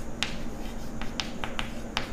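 Chalk clicking against a blackboard while a word is handwritten: a string of about six sharp, irregular clicks.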